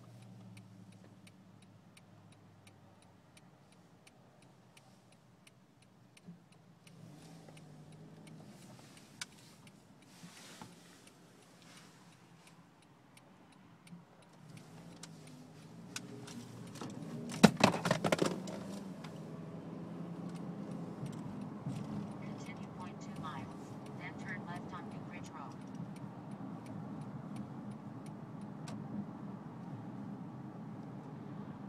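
Cabin of a Honda CR-V: faint regular ticking while the car sits still, then a short loud rattle of knocks about halfway through. After that the engine and road noise rise to a steady hum as the car drives off.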